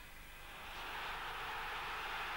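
Stadium crowd noise swelling into a loud cheer from about half a second in, as a goal is scored.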